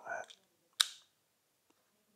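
A single sharp click about a second in: a SmallRig mounting piece snapping into the wireless follow focus controller's hand wheel, the sound of it locking into place.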